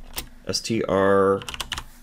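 Typing on a computer keyboard: scattered key clicks. About a second in, a man's voice holds one drawn-out hesitation sound for about half a second, louder than the keys.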